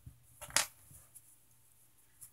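Fingers handling a crocheted square and yarn, a few short soft rustles, the loudest about half a second in.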